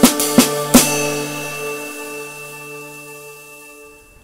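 The last few snare drum and cymbal strokes of a drum exercise over a sustained drone note from the play-along track. The strokes stop within the first second. The cymbal wash, from a dark cymbal fitted with a sizzle chain, and the drone then fade out over the next three seconds.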